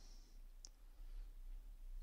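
Very quiet room tone with one faint single click about two-thirds of a second in, a computer mouse button.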